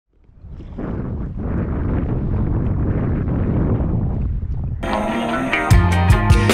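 Wind buffeting a camera microphone, fading in over the first second and holding steady. About five seconds in, music with a beat cuts in over it.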